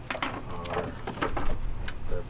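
A series of short, sharp clicks and taps from a wiring harness and its plastic connector being handled and fed through an opening in a metal tailgate.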